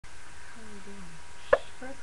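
A woman's short voiced sound falling in pitch, then a single sharp click or pop about a second and a half in, the loudest thing heard, with speech starting just before the end.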